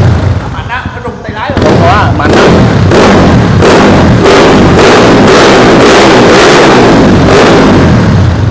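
A Yamaha Exciter underbone motorcycle's single-cylinder four-stroke engine revved hard and repeatedly through an aftermarket exhaust, with sharp pops and bangs from the exhaust. The owner says it is running a bit rich (too much fuel), which he blames for the exhaust popping.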